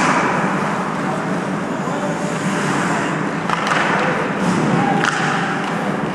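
Ice hockey play in a reverberant rink: skates scraping on the ice under a steady wash of rink noise, with sharp knocks of stick and puck at the start, about three and a half seconds in and about five seconds in.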